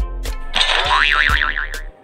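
Background music with a steady beat, overlaid with a cartoon boing sound effect: a tone that glides up and then wobbles rapidly up and down, from about half a second in until just before the end.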